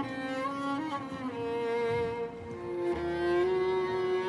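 Background score of bowed strings, with cello carrying slow sustained notes that change every second or so.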